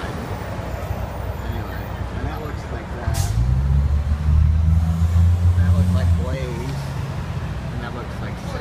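Street traffic noise: a motor vehicle's low engine hum swells in about three seconds in, starting with a brief sharp sound, and drops back shortly after six seconds.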